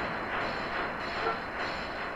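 Steady rushing noise with no clear pitch or rhythm.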